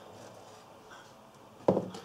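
Quiet kitchen room tone, then near the end a couple of soft knocks of crockery on the worktop.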